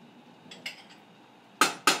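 A metal butter knife clinking against a stainless steel saucepan and butter dish as pats of butter are knocked off into the rice. There are a couple of faint taps about half a second in, then two loud, sharp clinks a quarter second apart near the end.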